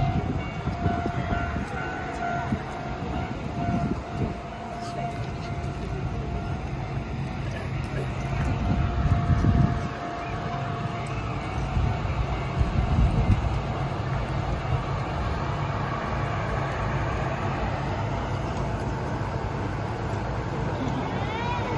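Electric train cars moving along depot tracks: a continuous low rumble of wheels and running gear that swells twice near the middle, with a steady thin tone for the first eight seconds or so. Crowd voices mix in.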